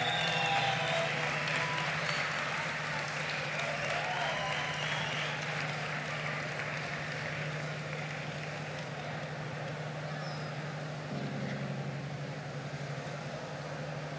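Audience applauding at the end of a song, the applause slowly dying away, over a steady low hum.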